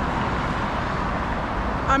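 Steady road traffic noise, a continuous even rush with no single vehicle standing out.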